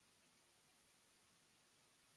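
Near silence: faint, steady hiss of room tone.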